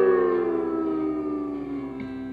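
Slide guitar's closing note gliding slowly down in pitch and fading away, over a lower chord left ringing at the end of the song.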